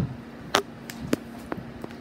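Handling noise: a handful of short, sharp taps and knocks as a hand bumps and covers the recording phone, the loudest about half a second and a second in, with a faint steady hum underneath.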